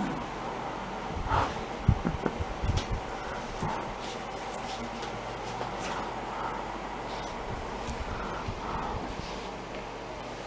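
A small dog playing with plush squeaky toys, tugging and mouthing them. There are soft thumps in the first few seconds, then several short, faint squeaks.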